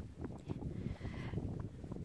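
Wind buffeting the phone's microphone: an uneven low gusting noise.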